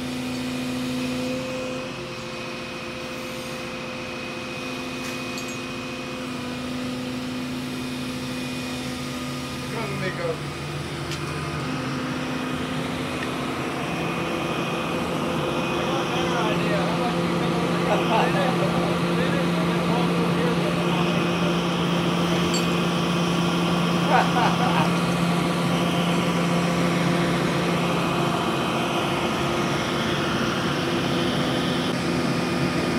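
Tracked excavator's diesel engine running steadily as it lifts and swings a steel floor beam, getting louder and lower-pitched about halfway through as it works harder.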